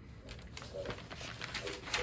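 Paper pages of a spiral notebook being handled and rustled in quick small clicks and crinkles, with a few faint short low tones in between.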